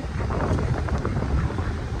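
Steady low rumble of road and engine noise inside an SUV's cabin during a drive.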